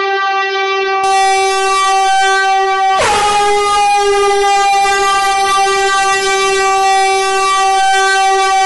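A loud, steady drone on one pitch, starting over about three seconds in with a short dip in pitch.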